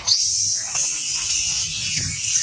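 A macaque screaming: one long, high-pitched, wavering scream that starts sharply. It is the distress cry of a monkey being attacked.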